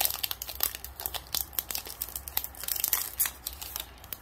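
Foil wrapper of a 2021 Bowman Chrome trading card pack crinkling and tearing in the hands as the pack is opened, with a steady run of irregular crackles that thins out near the end.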